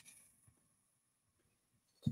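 Near silence: room tone, with one faint click at the very start.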